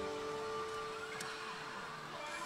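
Pachislot machine's electronic sound effect: a held chord of several steady tones ringing out and fading, one tone lingering until about a second and a half in, as the bonus rush ends. After it, only the low hum of the hall.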